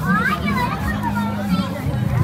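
Voices talking at a busy food stall, some high-pitched, over a steady low hum.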